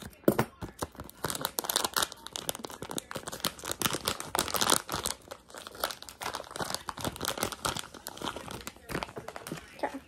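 Plastic blind-bag toy packet being opened: a sharp scissor cut near the start, then continuous crinkling and tearing of the wrapper as it is pulled open by hand.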